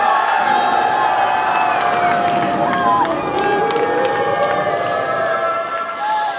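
A group of baseball players cheering and shouting together in the dugout for a home run, with long drawn-out yells over a steady clamour of voices.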